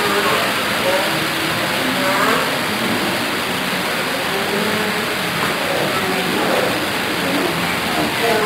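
Steady background hubbub of a crowded indoor hall, with indistinct voices of many people talking at once.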